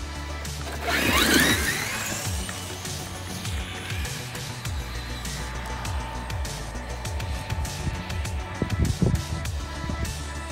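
Background music throughout. About a second in, a Traxxas X-Maxx 8S RC truck's brushless electric motor whines up sharply in pitch as the truck launches off at full throttle.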